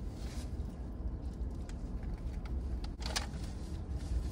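Car engine idling, heard as a steady low rumble inside the parked cab, with a few faint clicks and a brief rustle of food wrappings about three seconds in.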